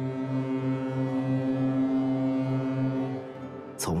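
A cargo ship's horn sounding one long, steady blast of about three seconds, stopping shortly before the end.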